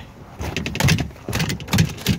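A bass flopping and thrashing on the deck of a plastic kayak: a quick run of irregular slaps and knocks beginning about half a second in.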